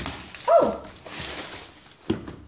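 Paper packaging rustling and crinkling as shoes are handled out of their box. About half a second in comes a short, loud cry that drops steeply in pitch, the loudest sound.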